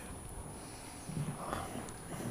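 Faint footsteps on a hard floor: a few soft, irregular steps beginning about a second in, with a tiny click near the end.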